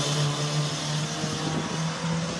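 Hatchback race car's engine under power as the car moves away along the circuit, its note fading gradually and edging slightly upward in pitch.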